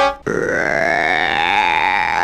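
A long, drawn-out burp lasting a little over two seconds, its pitch wavering slightly, just after the end of a short pitched vocal note.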